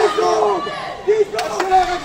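Ringside spectators shouting drawn-out calls of encouragement to a full-contact fighter, with two sharp smacks of gloved punches landing about a second and a half in.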